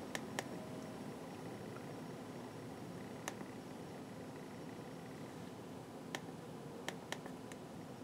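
Quiet room tone with a few faint, sharp clicks scattered through it: the buttons of an Autel AL319 handheld OBD-II scan tool being pressed to move through its menus.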